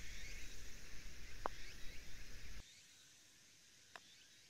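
A putter strikes a golf ball with one sharp click about one and a half seconds in, and a fainter click comes just before the end. Birds chirp faintly in the background, under a low wind rumble on the microphone that cuts off abruptly after about two and a half seconds.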